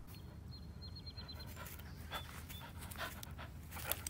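Faint panting of a two-legged dog as it runs, with a few soft breaths over a low steady background hum.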